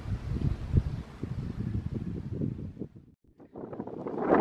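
Wind buffeting the microphone: an uneven low rumble that cuts out briefly about three seconds in.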